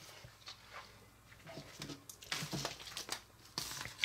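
Faint mouth and handling sounds while tasting powdered candy, then a plastic candy wrapper crinkling near the end as it is picked up.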